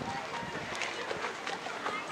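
Indistinct background chatter of several voices from players and spectators, with a few faint clicks.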